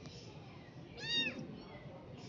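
A kitten meowing once, about a second in: a short, high-pitched meow that rises and then falls in pitch.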